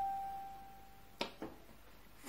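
Electronic keyboard in a piano voice, one high note (G) dying away, cut off about a second in with a short click, then a fainter click.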